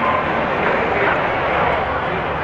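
Pickup truck engine running as it rolls slowly past, a steady rumble and hiss, with crowd chatter underneath.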